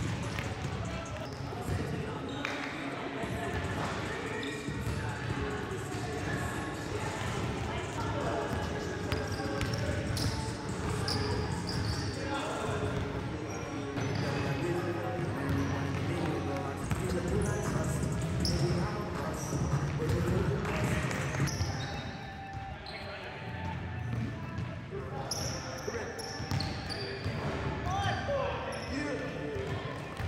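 A basketball bouncing on a hardwood gym floor during play, with players' voices calling out across the court.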